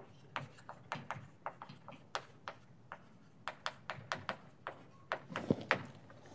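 Chalk on a blackboard as words are written: an irregular run of sharp taps and short scrapes, a few each second.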